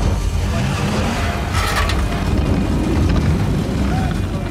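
Dramatic score music over a deep, steady rumble of a heavy vehicle pushing against tunnel debris, with a short crunching burst a little under two seconds in.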